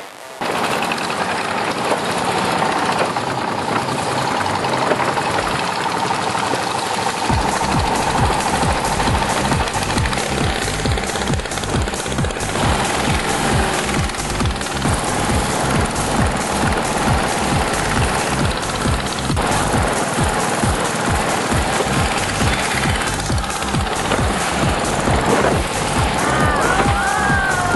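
Long-tail boat's unmuffled single-cylinder engine running loud and fast with a rapid, jackhammer-like beat. It comes in about half a second in, and its deeper pulse fills out from about seven seconds as the boat gets under way.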